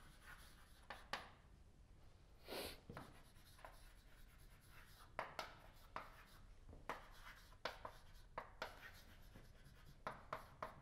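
Chalk writing on a blackboard: faint, irregular taps and short scraping strokes as letters are formed, with one longer scrape about two and a half seconds in.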